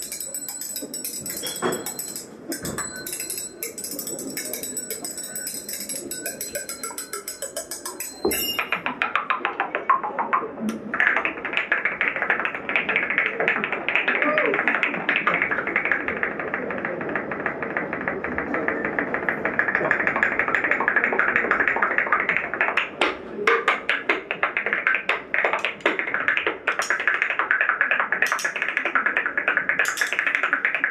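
An improvised solo noise piece, played close to a microphone with a small hand-held object and the hands. For about eight seconds there is a fast, bright, jingling rattle. It then turns into a dense stream of rapid clicks and crackles, with a few sharper taps.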